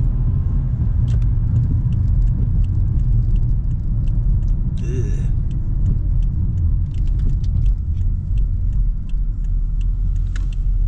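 Steady low rumble of a 1997 Toyota Mark II Grande 2.5 (JZX100) being driven, heard from inside the cabin as engine and road noise from its 2.5-litre straight-six and tyres. Faint light ticks are scattered through it, and a short voice-like sound comes about halfway.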